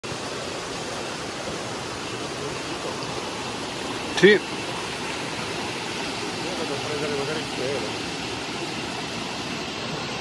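Forest stream running steadily over rocks, a constant rushing of water. A short shouted exclamation cuts in about four seconds in.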